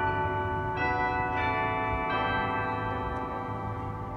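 Closing background music of bell-like chimes: a few struck notes about one, one and a half and two seconds in, ringing over a sustained chord and slowly fading toward the end.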